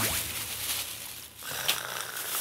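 Plastic bags rustling and crinkling as things are pulled out of them, with a steady high tone coming in near the end.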